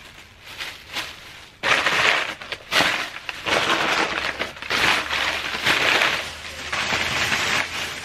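Thin plastic shopping bag crinkling and rustling as hands dig through it. It is quiet for the first second and a half, then loud in bursts from there on.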